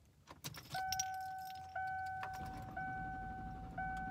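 Car keys jangle, then the car's warning chime sounds, a steady two-note tone repeating about once a second. About halfway through, a low rumble builds up as the engine is cranked, a car that is struggling to start in the cold.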